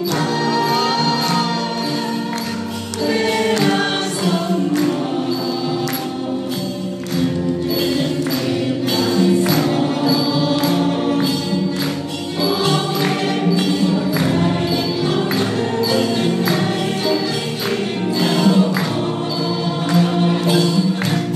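Live traditional ensemble music with singers: voices sing over struck melodic instruments, while sharp percussion strokes keep a steady beat.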